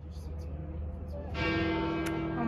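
Church bell of St. Peter's Basilica ringing, its steady tone coming in about one and a half seconds in over a murmur of voices.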